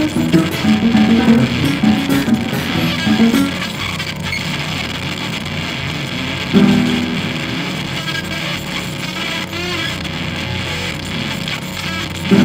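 Free-improvised experimental music: guitar notes over a dense, hissing electronic texture, with a chord struck about six and a half seconds in that rings and slowly fades.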